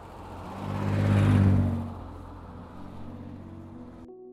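1969 Mercedes-Benz 280 SL's straight-six engine as the car drives past: the sound swells to its loudest a little over a second in, then fades away as the car moves off.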